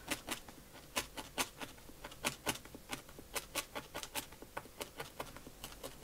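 A felting needle stabbing again and again into wool on a foam block, making a string of small, sharp, irregular ticks, about four or five a second. The wool is rolled around a wooden skewer, and now and then the needle bumps against the stick inside.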